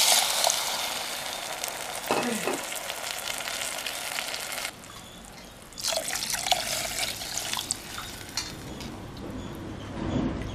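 Tamarind water poured from a bowl into a metal pot of fried spices, a continuous splashing pour that drops away for about a second midway, then starts again and tails off.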